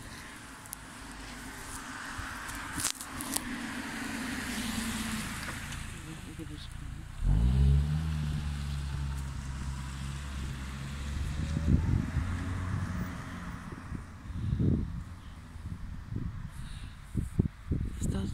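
A motor vehicle's engine running as a low, steady hum; it comes in with a brief rise in pitch about seven seconds in.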